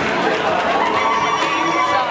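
Audience cheering and whooping, with high, wavering shrieks over the crowd noise.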